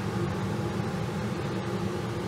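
A steady low mechanical hum with a faint even hiss, unchanging throughout.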